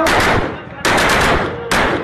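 Automatic rifle fired into the air in three rapid bursts of shots, the middle burst the longest, with short gaps between them.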